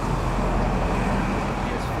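Road traffic noise: a vehicle passing that swells to a peak about a second in and then eases off.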